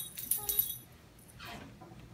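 Brief light metallic jingling in the first half second, like small tags or keys shaken, then quiet room sound.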